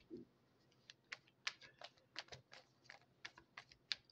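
Faint, irregular light clicks and taps of tarot cards being handled on a table, about a dozen of them starting about a second in.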